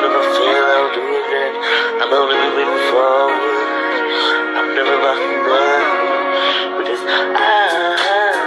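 Pop song: a lead vocal singing a melody over a continuous musical backing track.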